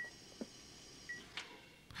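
Faint hospital monitor beeping: short, thin electronic beeps about a second apart, with two soft clicks as a hand works the machine's controls.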